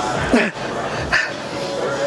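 A woman laughing briefly, a short laugh that slides down in pitch, followed by a second quick burst of laughter about a second in.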